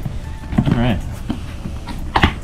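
A man's brief wordless vocal sound, wavering in pitch, over a few short knocks and rustles of a cardboard product box being handled and turned upright.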